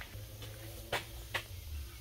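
Low steady background hum with two short clicks about half a second apart near the middle.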